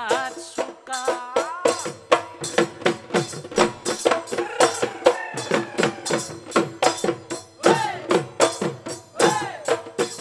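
Live Bihu folk music: dhol drums beating a fast, even rhythm of about three to four strokes a second, with a voice singing over them.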